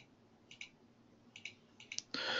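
Faint clicks of a computer mouse, in three quick pairs spread across the two seconds, as Photoshop layers are toggled on and off.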